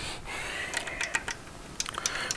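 Light, irregular clicks of small metal valvetrain parts being handled at the rocker arms, over a soft rustle.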